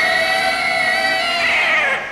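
Godzilla's roar: one long, screeching cry held at a fairly steady pitch, which wavers and trails off near the end.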